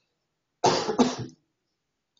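A man coughing twice in quick succession, starting just over half a second in.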